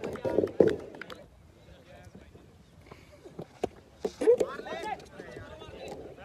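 Men's voices calling and shouting across a cricket field, loudest in the first second and again about four seconds in, with a few sharp knocks near the start and a quieter stretch between.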